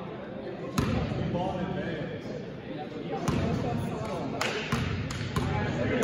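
A basketball free throw hitting the hoop about a second in. Later the ball is bounced on the gym floor several times, about three bounces a second, in a large echoing gym.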